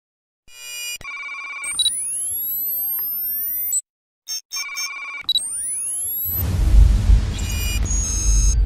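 Electronic logo-intro sound effects: clusters of short digital beeps and rising whistling sweeps, cutting out briefly near the middle and then repeating. About six seconds in, a loud deep noisy swell takes over.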